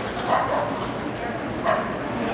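A dog barking twice, short sharp barks about half a second and nearly two seconds in, over a steady murmur of voices.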